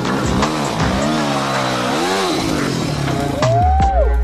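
Dirt bike engine revving up and falling back three times as it rides through water, with splashing. Near the end this cuts off, and a deep steady hum and a high sliding tone begin.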